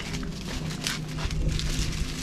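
Leaves and grass rustling in short, irregular crackly bursts as a kite line is handled at a tree trunk, with wind rumbling on the microphone.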